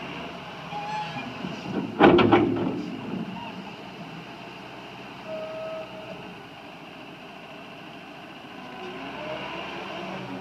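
Case 321D wheel loader's diesel engine running steadily as the machine drives on dirt and works its bucket, with a loud burst of knocks and rattles about two seconds in.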